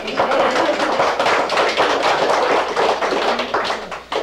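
Congregation applauding: a dense round of hand claps that breaks out suddenly and trails off after about four seconds.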